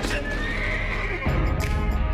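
A horse whinny, standing in for a unicorn's call, over dramatic trailer music. A little over a second in, a deep low boom hits and the music swells.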